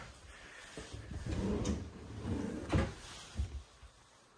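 Kitchen drawer and cabinet door being handled: a low sliding rumble, then a sharp knock about three-quarters of the way through as a cabinet door is opened.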